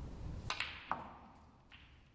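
A snooker shot: the cue tip strikes the cue ball, then sharp clicks of balls hitting each other, the loudest just under a second in, and a softer knock near the end.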